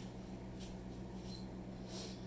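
Faint rubbing of a cloth towel drying a small folding knife by hand, a few soft strokes over a steady low hum.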